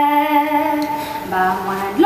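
A woman singing long held notes, moving to a new note a little past the middle.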